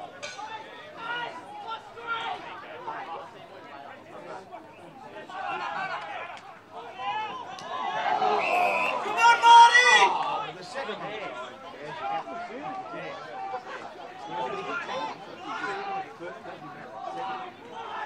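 Indistinct chatter and shouted calls of voices at a local Australian rules football match, with louder shouting from about eight to ten seconds in.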